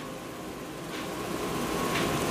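Steady mechanical noise of a small tracked home robot's drive motors and tracks as it turns on concrete, growing slightly louder, with a faint thin whine.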